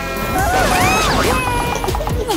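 A locomotive smashing into a car, a crash of crumpling metal starting about half a second in, mixed with background music and gliding cartoon sound effects.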